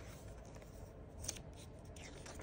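Pages of a glossy paperback book being turned by hand: a faint paper rustle, with one short sharper rustle a little past the middle.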